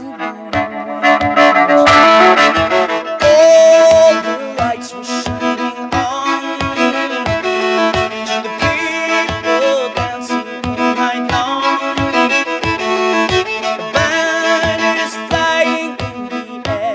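Viola bowed in a lively folk tune, with a loud held note about three seconds in, over a steady foot stomp keeping time about twice a second.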